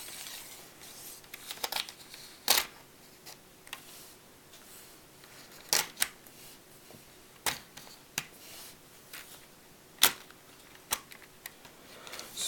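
Sharp plastic clicks and taps from a Lego model tank being handled and pressed, about ten of them at irregular intervals, with faint handling noise between.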